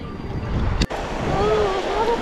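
Wind buffeting the microphone over gently washing shallow surf, with one sharp click just under a second in.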